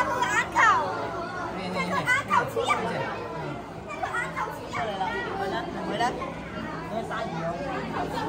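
Indistinct chatter of many visitors, with children's high-pitched voices among them.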